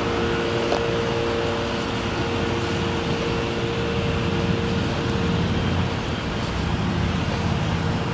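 A 2015 Dodge Durango's 3.6-litre V6 and tyres driving by at low speed: a steady vehicle noise with a constant hum.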